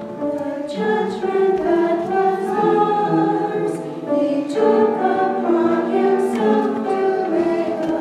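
Church choir of mixed men's and women's voices singing together, moving from held note to held note.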